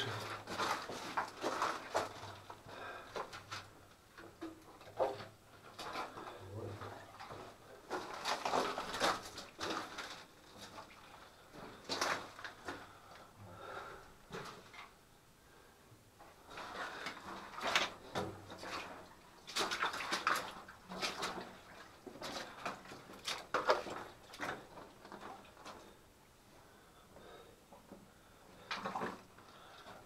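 Footsteps scuffing and crunching over the gravel and rubble floor of a narrow rock mine tunnel, with clothing and gear rustling. They come in irregular bursts separated by short quieter pauses, in the small-room sound of the tunnel.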